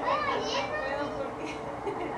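High-pitched voices of children at play, one calling out with a rising and falling pitch in the first moments and a fainter squeal later.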